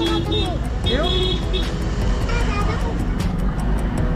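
Busy street traffic: a steady rumble of motorbikes and other vehicles passing close by, with people's voices over it in the first couple of seconds.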